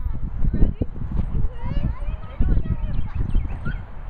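Children's high voices calling out unintelligibly over an uneven low rumble of wind buffeting the microphone.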